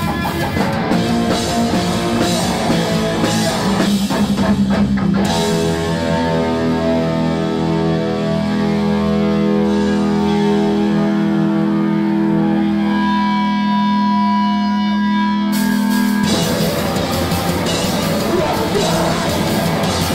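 Loud live punk rock band of electric guitars, bass and drums. About five seconds in the drums drop out and the guitars hold ringing chords and sustained notes for about ten seconds. The full band comes back in about sixteen seconds in.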